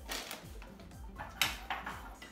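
Background music with a few short clicks and knocks from an espresso machine's metal portafilter and coffee scoop being handled. The sharpest click comes just after halfway.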